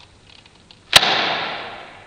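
A length of stretched orange rubber snapping with a single sharp crack about a second in, followed by a fading hiss over about a second. Before the snap there is faint rubbing as the rubber is pulled taut.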